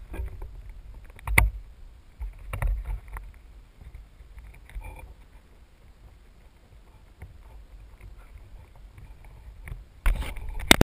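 Wind rumble and handling noise on a quadcopter's GoPro microphone as the landed craft, propellers stopped, is picked up and carried. A sharp knock comes about a second and a half in, with more bumps a second later and again near the middle.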